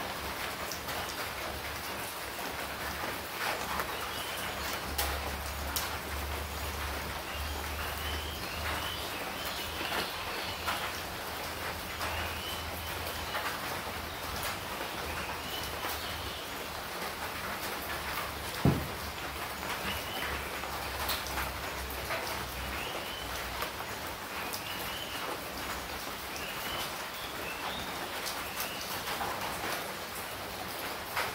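Outdoor ambience: a steady hiss with birds chirping over and over, and scattered faint clicks. One sharp knock about two-thirds of the way through is the loudest sound.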